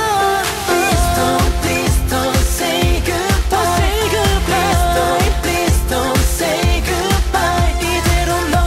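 Korean pop song with a male vocal singing over a steady beat.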